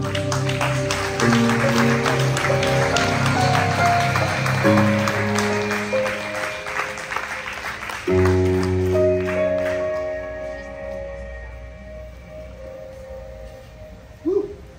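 Ambient synthesizer chords played from a laptop and keyboard controller, held and changing a few times, then fading away over the last few seconds. Audience applause runs over the first half.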